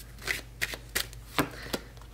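A tarot deck being shuffled by hand: a run of about six short, sharp slaps of cards against each other.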